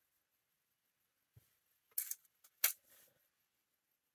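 Hands handling and pinning bamboo rayon knit fabric: quiet at first, then two short, sharp scratchy rustles about half a second apart, a couple of seconds in.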